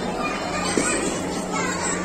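Many children's and adults' voices chattering and calling over one another, children's voices to the fore.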